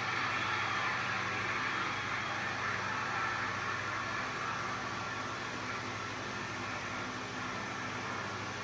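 Audience applauding steadily after a correct answer is confirmed, slowly fading.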